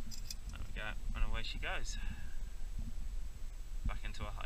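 A man's voice saying a few indistinct words about a second in, over a steady low rumble.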